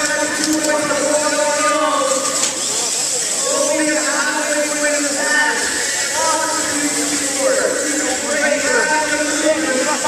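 A man talking steadily into a microphone, his voice amplified and echoing in a large hall, like match commentary over a public-address system.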